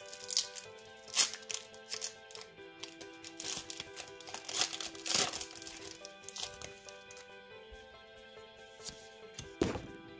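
A foil Pokémon booster pack wrapper being crinkled and torn open by hand, with a run of sharp crackles through the first six seconds or so, over background music. Near the end comes a thump as the camera is knocked.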